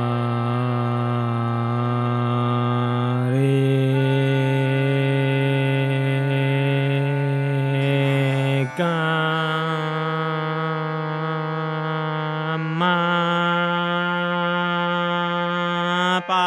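A man's voice singing the Indian sargam scale, each syllable held for about four seconds before stepping up to the next note. The pitch rises three times.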